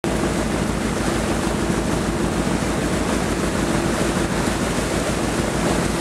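A boat's engine running steadily under way, a fast even low throb with a steady hum over it, mixed with the rush of water churned up in the wake and wind buffeting the microphone.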